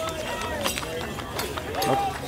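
Voices talking at a crafts market stall, mid-haggle over price, over a busy background of market noise with scattered light clicks.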